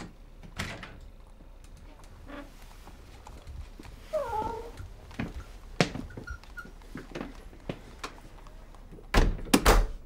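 A cat meows once, a short call falling in pitch about four seconds in, amid faint soft clicks. Near the end come three loud thuds at a wooden shop door.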